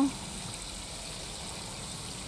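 Faint, steady background noise with no distinct events: ambient room tone between words.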